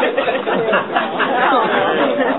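Several people's voices talking over one another, a jumble of chatter with no words standing out.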